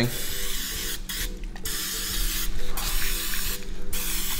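A pump-pressurized stainless oil mister spraying a fine mist in three hissing sprays, each about a second long, with short pauses between them.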